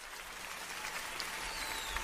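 Live audience applause at the start of a concert recording, growing slowly louder.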